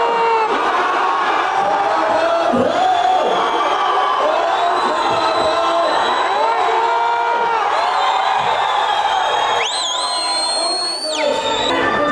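A man singing into a microphone with a crowd singing along and cheering. Near the end a high whistle rises in and holds for about a second and a half.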